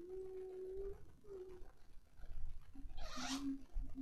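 A voice holding long, steady low notes, with a short hiss about three seconds in.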